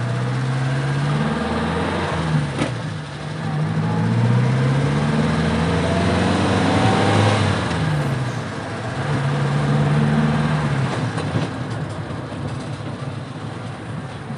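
Mitsubishi Colt T120 SS van's engine, its characteristic note, revving up and easing off three times in a row as the van accelerates, with the pitch rising and then dropping each time. The sound fades near the end.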